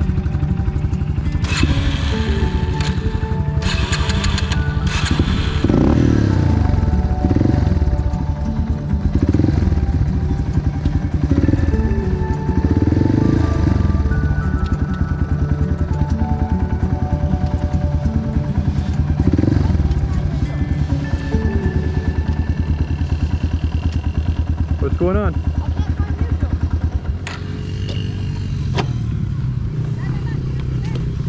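Single-cylinder four-stroke dirt bike engines idling, with the throttle blipped several times so the engine note swells up and falls back. The level drops slightly near the end.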